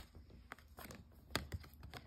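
Tarot cards being handled: a few quiet, separate taps and clicks as a card is drawn from the deck and brought over the spread.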